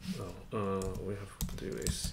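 Computer keyboard keys clicking as a command is typed, several quick strokes in the second half, with a man's voice speaking briefly just before the clicks.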